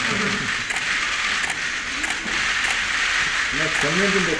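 Murmur of many voices from the press pack at a photo call, with a handful of camera shutter clicks scattered through it; one man's voice starts calling out near the end.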